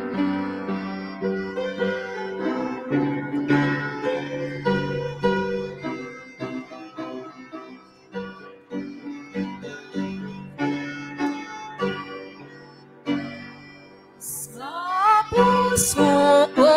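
Piano and electronic keyboard playing a hymn introduction in slow, steady chords. Near the end a voice comes in singing the first line.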